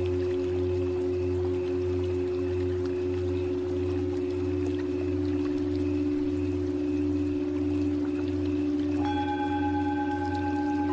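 Tibetan singing bowls ringing in a sustained drone of several held tones that waver with a slow, pulsing beat. About nine seconds in, a higher bowl is struck and rings on over the drone.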